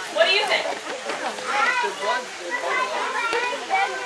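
Several children's voices talking over one another, calling out.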